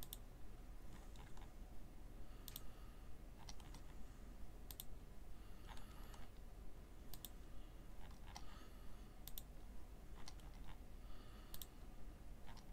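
Computer mouse button clicking faintly, a click or quick double click every second or so, as a randomize button is pressed over and over.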